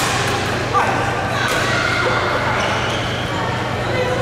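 Racket strikes on a shuttlecock in a badminton rally, the loudest a sharp crack about three quarters of a second in, echoing in a large hall. Voices follow for the rest of the moment.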